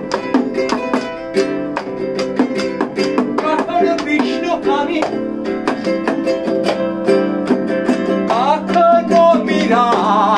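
Live acoustic music: a small nylon-string guitar strummed, with a hand-played frame drum keeping a quick, steady beat of sharp strokes.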